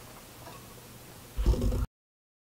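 Faint background hiss, then about a second and a half in a short, loud, low-pitched burst of sound that cuts off abruptly into silence.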